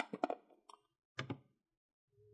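Light clicks and taps of a precision screwdriver bit kit being handled: a cluster of clicks at the start, then a faint tick and two more clicks just over a second in, as the plastic case is shut and set aside and small metal driver bits are picked up.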